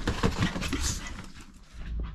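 Several small dogs jumping down off a bed onto the floor: a quick run of paw thumps and claw clicks that dies down about a second and a half in.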